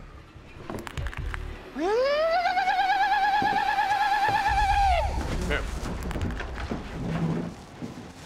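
A few knocks, then a loud, high, wavering scream that swoops up in pitch and is held for about three seconds before breaking off, over background music.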